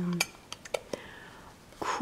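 A few light clicks and clinks of a small metal tea-tin lid against the tin as it is handled and fitted back on: four short ticks in the first second, then a quiet stretch.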